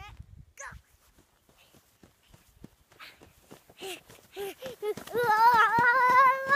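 A young child running through snow: faint steps at first, then short high-pitched gasping cries, then a long, wavering, high-pitched yell near the end.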